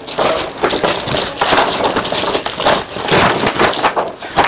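Glossy paper catalogue sheets and plastic wrapping crinkling and rustling as they are handled, a dense run of crackles.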